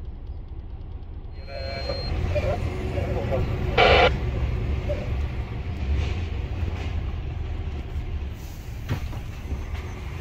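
Steady low rumble of a DAF truck's diesel engine and road noise heard inside the cab, growing louder as the truck pulls away and drives on. A short, loud burst of sound about four seconds in.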